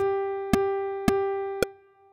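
Metronome-style clicks marking a steady pulse about twice a second, with a sustained instrument note on G above middle C struck anew on each click: quarter notes, one per beat. The last note fades out just before the end.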